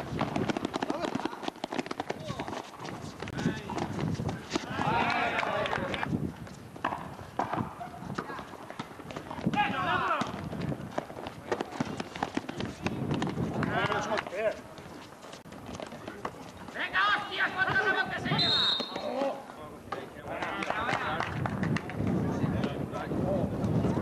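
Players' voices calling out on an outdoor basketball court, over the quick patter of sneaker footsteps running on concrete and a basketball bouncing.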